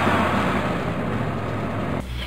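A transition sound effect: a steady rushing whoosh over a low, engine-like hum, easing off slightly toward the end.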